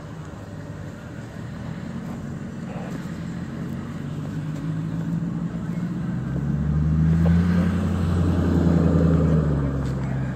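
A motor vehicle engine running with a steady low hum that grows louder from about six seconds in and eases off just before the end.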